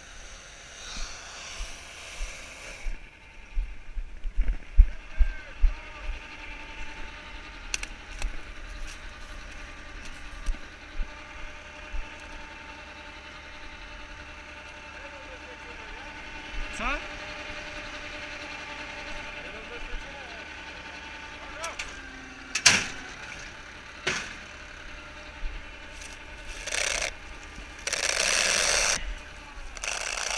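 Tractor diesel engine running at a steady speed, with several loud bursts of noise near the end.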